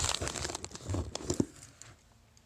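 Packaging crinkling and rustling as a watch is handled and picked up, with a few sharp clicks among it; it dies away shortly before the end.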